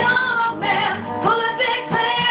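Acoustic guitar strummed under a voice singing held notes that bend in pitch.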